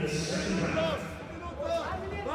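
Male commentator's speech over the background noise of an arena crowd.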